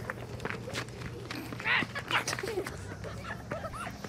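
Scattered short children's voices and scuffling over a low steady hum, as kids shove a man away from a small toy car.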